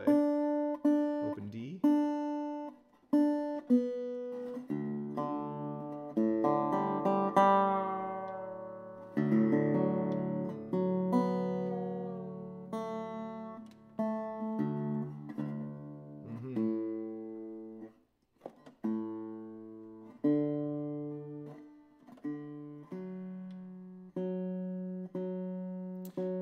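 Wood-body resonator guitar being tuned: single strings plucked again and again as a tuning peg is turned, their pitch sliding a little, with strummed chords in the middle to check the tuning.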